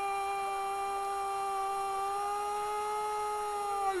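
A football commentator's drawn-out goal shout, "goooool", held on one steady high note for about four seconds before breaking into speech near the end.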